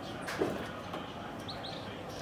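Birds chirping, with a pair of quick high chirps about one and a half seconds in. A brief knock sounds about half a second in.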